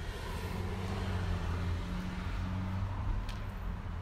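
A steady low mechanical hum over a general outdoor background hiss, with one short click about three seconds in.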